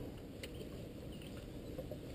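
Faint low background rumble, with one light click about half a second in.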